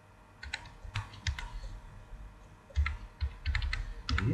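Computer keyboard typing: irregular runs of key clicks starting about half a second in, coming faster and closer together in the last second or so.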